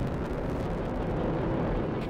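Rocket launch heard from afar: a steady, even rumble from the engines as the rocket climbs.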